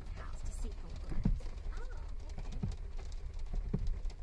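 Inside a car cabin: a steady low rumble with scattered light clicks and taps, and faint murmured voices.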